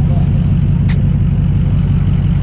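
Ford Power Stroke diesel pickup engine running steadily at low revs close by, a constant low drone.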